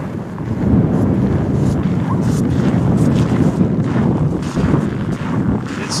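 Strong wind buffeting the microphone: a loud, low rumble that swells and dips.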